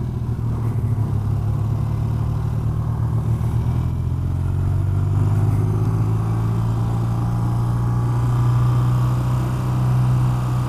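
BMW airhead air-cooled boxer-twin motorcycle engine running steadily as the bike rides at low speed in city traffic.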